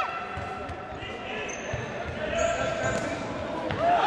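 Futsal being played in a sports hall: repeated dull thuds of the ball and players' feet on the hard hall floor, with players' and spectators' shouts echoing in the large room.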